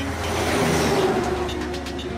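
A whoosh sound effect for an animated logo reveal, swelling to a peak just under a second in and then fading, over background music.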